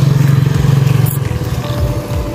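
A motor vehicle engine running close by, a steady low hum that is strongest for about the first second and then fades.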